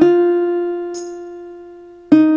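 Instrumental music: a single guitar note plucked at the start and left to ring, fading away steadily, with a brief faint high scrape about a second in.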